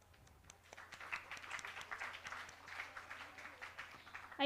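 Audience applauding, building up within the first second and going on steadily, faint and somewhat distant in the hall.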